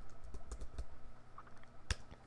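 Computer keyboard typing, a few scattered keystrokes, then one sharper, louder click near the end.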